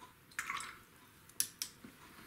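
Faint, wet sounds of a watercolor brush being dipped and worked in water and paint on the palette: a short swish about half a second in, then two sharp small clicks near the middle.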